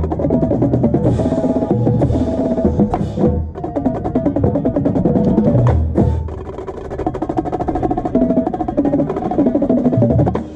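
Marching tenor drums (a six-drum set with Evans heads) played close up in fast patterns, along with the rest of a marching percussion line, over sustained pitched notes. The music briefly drops a little after three seconds and plays softer in the middle stretch before building again.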